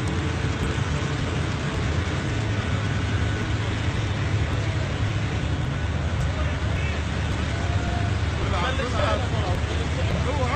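Steady rushing noise with a low rumble underneath, from water gushing out of a freshly drilled borehole at a drilling rig. Voices shout briefly near the end.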